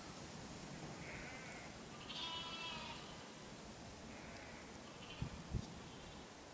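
Lambs bleating: a short high call about a second in, then a longer, louder one at about two seconds, with fainter calls later. Two dull low thumps come near the end.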